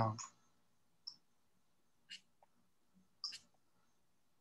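A man's voice ends on a word. Then come a few faint, short clicks, scattered about a second apart, in an otherwise quiet room.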